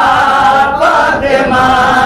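A man singing an Urdu devotional poem in praise of the Prophet Muhammad and Fatima, drawing out long, wavering notes.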